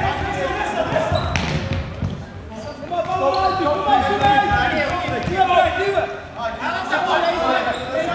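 Players' voices calling out in a large indoor sports hall, over the thuds of a futsal ball being kicked and bouncing on the wooden floor, with a sharp knock about one and a half seconds in.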